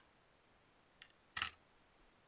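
A small metal cleat washer set down on a plastic cycling cleat on a digital scale: a faint tick about a second in, then one sharp, short clink.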